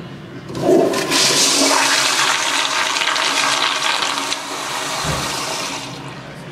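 Zurn commercial toilet flushing: a sudden loud rush of water begins about half a second in, stays strong for about three and a half seconds, then eases to a weaker rush that fades near the end.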